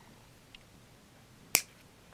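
Wire cutters snipping through thin jewelry wire at a pre-made bend: one sharp, loud click about one and a half seconds in.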